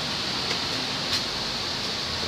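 Steady hiss of background room noise in a large garage, with a couple of faint ticks.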